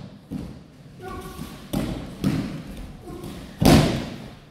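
Bodies and hands hitting tatami mats during aikido throws and breakfalls: a series of thuds and slaps, the loudest near the end. A short shout is heard about a second in.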